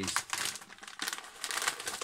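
A plastic crisp packet crinkling as it is picked up and handled: a dense, continuous run of crackles.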